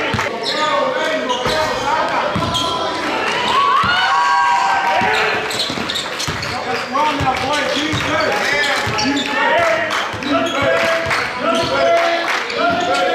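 A basketball being dribbled on an indoor gym floor, the bounces coming as repeated short thuds, under the chatter of voices in the hall.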